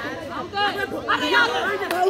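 Several people's voices calling out and talking over one another, getting louder about half a second in.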